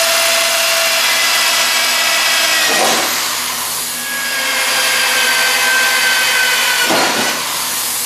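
Corded electric drill running continuously as its bit cuts through 1/8-inch aluminium diamond plate, a steady high whine with a brief rougher grind about three seconds in and again about seven seconds in.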